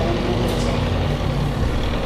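Steady low rumble and constant hum of background room noise, with no distinct event standing out.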